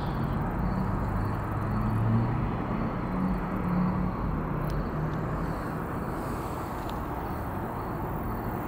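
Steady low outdoor background rumble with a wavering low hum in the first half, like distant traffic, and a few faint clicks.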